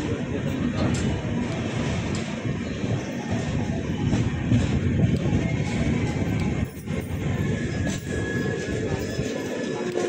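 Passenger train coach rolling slowly along a station platform, heard from its open door: a steady rumble of wheels on track, with a few thin high whines in the second half.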